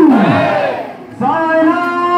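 A group of voices chanting in unison on held notes; about half a second in, a phrase ends in a long falling slide, there is a brief break, and the held chant picks up again.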